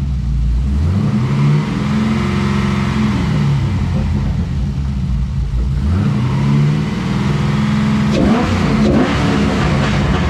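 LS V8 of a Holden Commodore VE SS with headers and race pipes, blipped up from idle and back down about three times. Around the last rev there is a scatter of crackles and pops from the freshly tuned exhaust.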